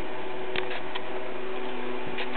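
A few faint clicks from puppies gnawing on a shoe, over a steady background hum.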